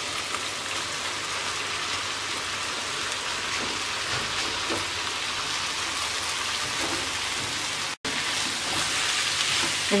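Prawn curry and grated watermelon rind frying in hot oil in a pan, a steady sizzle. The sound drops out for an instant about eight seconds in, then the sizzle carries on a little louder.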